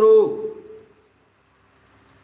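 A man's voice finishing a word, trailing off within the first second, then near silence.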